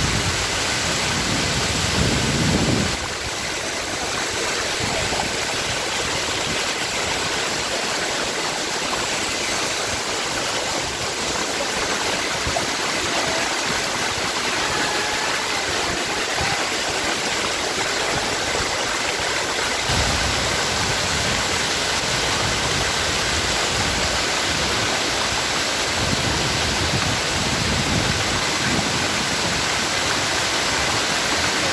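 Small waterfall and river cascade tumbling over rocks: a steady, continuous rush of water close to the microphone.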